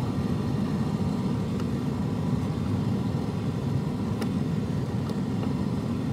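Steady low rumble throughout, with a few faint light clicks as a small Torx bolt is worked loose by hand with a key.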